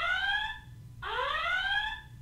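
Built-in siren of a Konyks Camini Care indoor Wi-Fi security camera sounding: a repeating electronic whoop that rises in pitch, each rise lasting just under a second, about every second and a half. It is an alert meant to tell a detected person that the camera has spotted them.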